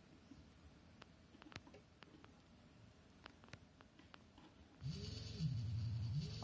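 Faint scattered clicks, then about five seconds in a small DC gear motor with a Hall-effect encoder switches on and runs with a steady low hum and a thin higher whine.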